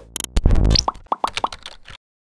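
Electronic logo sting: quick pops and clicks, then a run of short pitched blips about a second in, cutting off abruptly at the end.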